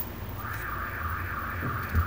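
Handling noise at a table microphone: a small click at the start as a sheet of paper is lifted, and a sharp thump near the end as a hand touches the microphone. Under them a low hum runs throughout, and a steady buzzing tone comes in about half a second in.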